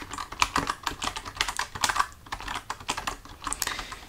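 Typing on a computer keyboard: a continuous run of irregular key clicks.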